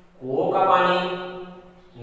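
A man speaking one long, drawn-out phrase in Urdu, his pitch held nearly level so that it sounds like a chant.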